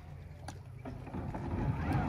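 Bombardier jet ski engine running at idle across the water, a low steady drone that gets louder in the second half. A single sharp click about half a second in.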